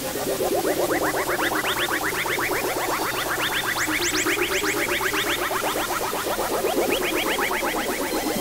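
Experimental electronic music: a dense run of quick rising synthesizer chirps, many a second, over a wavering lower tone.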